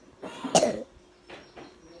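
A child coughing once, loudly, about half a second in: a cough from a boy who is sick.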